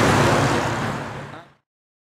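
Open-sided tour bus running amid traffic noise, with voices on board, fading out to silence about one and a half seconds in.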